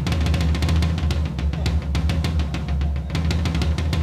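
Drum roll: a rapid, continuous run of drum hits over a low drum rumble, played as suspense before a winner is announced.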